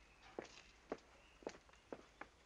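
Footsteps of several people walking on a stone patio: faint, sharp shoe clicks, about two steps a second.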